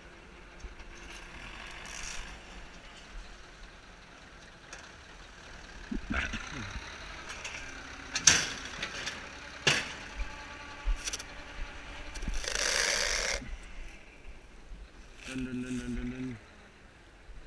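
Bale wrapper and tractor at work: a low mechanical background with a few sharp clanks about a second and a half apart in the middle, then a hiss lasting about a second near the end.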